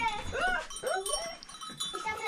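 Bells on grazing cows ringing irregularly, with rising and falling vocal sounds over them.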